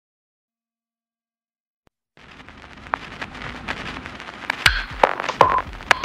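Electronic intro of a rock backing track: about two seconds of silence, then a hiss with crackling clicks and a few short tones that grows steadily louder.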